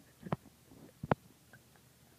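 Two short, soft knocks about a second apart: a hand handling a plastic toy engine on carpet right next to the microphone.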